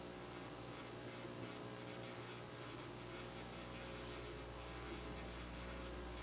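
Faint steady electrical hum with light, irregular scratching and rustling.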